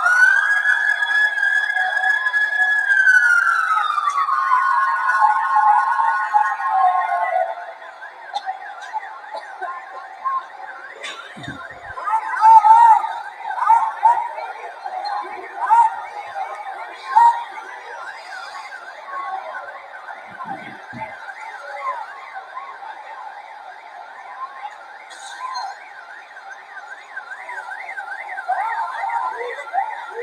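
Siren: a high tone rises, holds steady for about three seconds, then slides down over the next four seconds. After that, a fainter siren warbles quickly up and down, about three times a second, with several loud sudden sounds a few seconds later.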